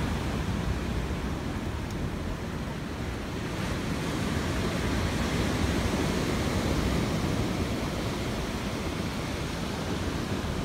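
Rough sea surf breaking against a sea wall, a steady wash of noise with wind buffeting the microphone.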